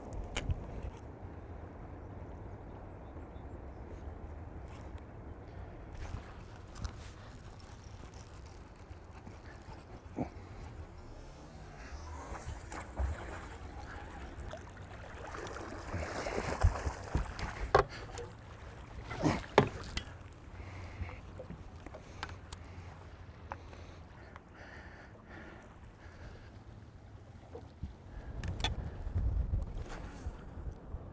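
Steady low rumble of wind and lapping water around a fishing boat. About halfway through comes a louder stretch of splashing and a few sharp knocks as a bass is scooped from the surface in a landing net.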